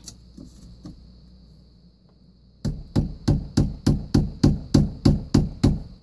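Rubber hammer handle tapping a plastic filter wrench on a whole-house sediment filter housing: about a dozen quick, even knocks, three to four a second, starting a little over halfway in. The taps are meant to loosen the housing's stuck threads.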